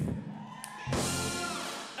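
Live band's brass-and-drum sting, the comic 'bam' played after a thanked name: a sudden hit about a second in, held briefly and then fading with some notes sliding down.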